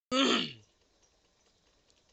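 A man clears his throat once, a short voiced sound about half a second long that falls in pitch.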